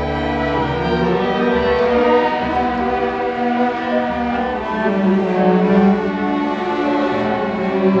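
String orchestra of violins and cellos playing long held bowed notes in several parts. A deep bass note sounds in the first second, then drops out.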